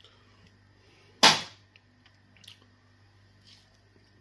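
One sharp, short eating noise about a second in that fades quickly, followed by only faint small sounds of fingers working food in stew.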